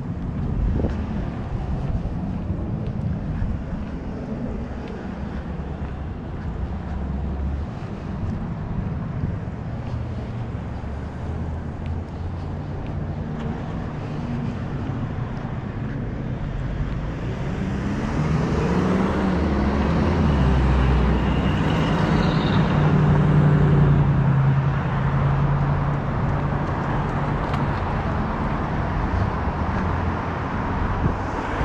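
Road traffic: cars passing on a city street. It grows louder about two-thirds of the way in, as a vehicle engine rises in pitch and then runs steady close by.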